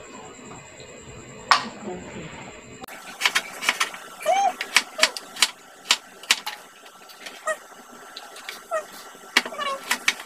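Kitchen knife slicing chayote on a cutting board: sharp knocks of the blade hitting the board, coming roughly every half second from about three seconds in.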